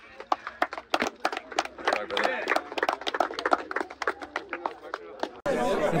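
Small crowd clapping, many irregular sharp claps with voices calling out under them; it cuts off abruptly near the end.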